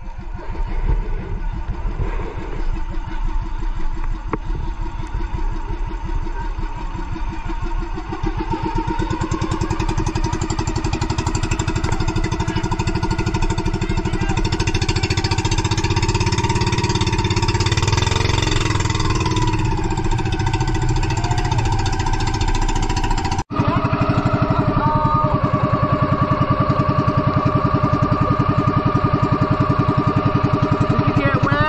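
Engine of a motorised outrigger boat (bangka) running steadily under way. It breaks off for an instant about three-quarters of the way through and then carries on with an even pulse.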